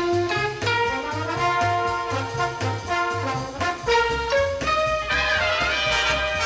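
Upbeat, jazzy background music led by brass horns over a steady, evenly stepping bass line.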